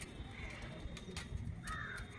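A crow cawing, loudest once near the end, over light clicks and knocks of a metal light stand's legs being handled.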